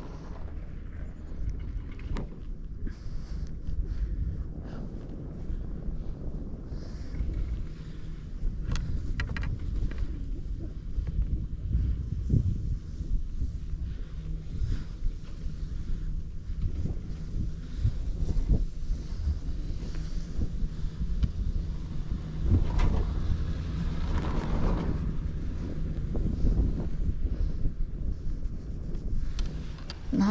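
Wind rushing over the microphone on a moving chairlift: a steady low rumble with a few short clicks and knocks.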